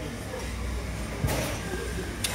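A man drinking from a cup, with one short breathy sound from him about a second and a quarter in, over a steady low background hum.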